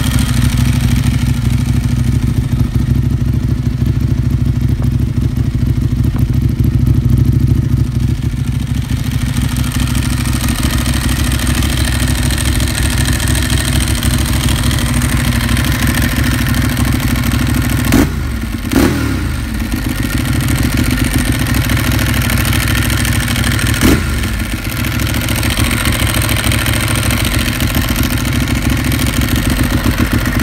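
Ducati 1198's L-twin engine idling through a Termignoni exhaust with a steady, loud, lumpy pulse. Two quick throttle blips about two-thirds of the way through, the revs falling back to idle, and one more a few seconds later.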